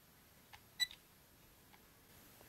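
A single short, high electronic beep from the JJRC H36's handheld radio transmitter a little under a second in, as it binds to the quadcopter, with a faint click just before it.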